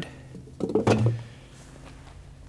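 An engine's upper intake plenum set down on a concrete shop floor: two quick knocks a little after half a second in, the second with a dull thud under it.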